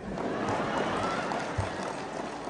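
Congregation applauding: a dense patter of many hands clapping that rises a moment in and eases slightly near the end.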